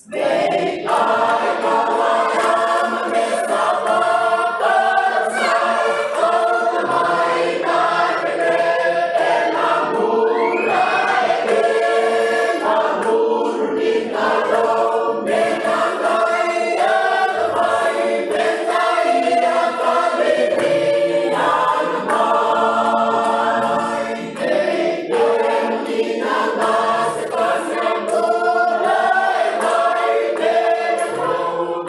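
A village church congregation singing together as a choir, many voices in harmony, loud and steady throughout.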